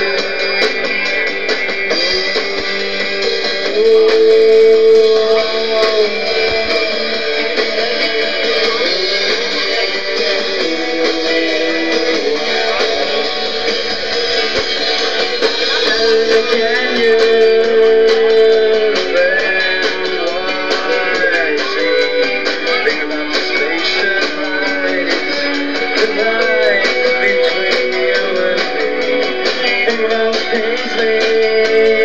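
Live rock band playing, with electric guitars strumming prominently over bass and drums.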